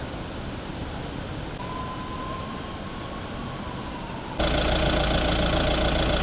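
Utility vehicle's engine idling, a steady low drone that starts abruptly about four seconds in. Before it there is only faint outdoor hiss with high chirps.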